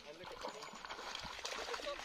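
A small dog wading through shallow water, its legs splashing and sloshing, getting louder about half a second in.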